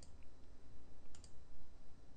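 A few soft clicks from a computer mouse over quiet room noise, a pair of them about a second in, as the presentation slides are clicked forward.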